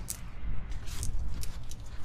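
Handling noise as a potted plant is set aside: a few short rustles and soft knocks over a low steady rumble.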